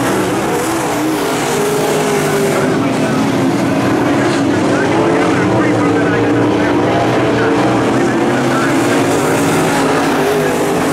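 Dirt late model race cars' V8 engines running hard around a dirt oval, their pitch wavering up and down as the cars come off the throttle and back on through the turns.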